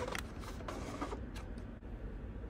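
A few soft mechanical ticks and clicks from the Panasonic AG-HPX175 video camera as its lens zooms out and refocuses, over a low steady hum.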